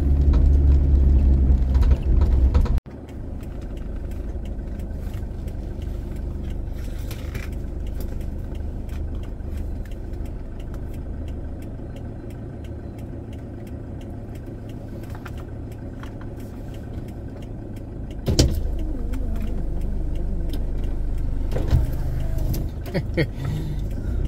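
Car running on a dirt road, a loud low rumble that cuts off abruptly about three seconds in. Then the car idles while stopped, a steady low hum. About eighteen seconds in a motorcycle approaches and the sound grows louder.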